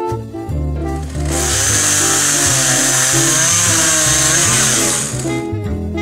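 A petrol chainsaw starts up loud about a second in and runs at high revs for about four seconds, its pitch wavering, then cuts off. Swing-jazz background music plays throughout.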